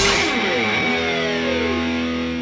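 Background music: the rock band stops and a final electric guitar chord is left ringing, with a sound gliding down in pitch over it as the chord slowly fades.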